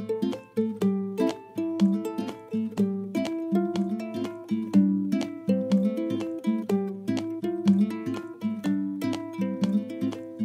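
Background music: light plucked-string tune on ukulele or guitar, with notes picked in a steady rhythm.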